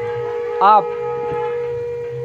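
A conch shell (shankh) blown in one long, steady, unbroken note.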